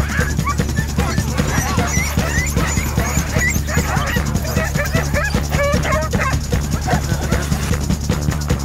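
A team of harnessed sled dogs barking and yipping excitedly, many short rising and falling calls overlapping, the clamour of dogs eager to run. Background music plays underneath.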